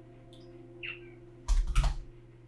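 A faint held background-music chord lingers and fades. Then, near the end, a short loud burst of knocking and rustling, like handling on or near the microphone, comes along with the word "on".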